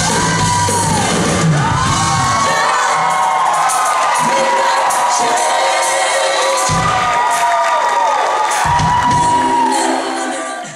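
Concert audience screaming and cheering, with long rising-and-falling shrieks, over a live band. The band's bass drops out a few seconds in and comes back only in short hits.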